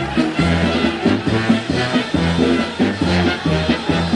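Instrumental passage of a Neapolitan song played by a band, with a bass line stepping from note to note over a steady beat and no singing.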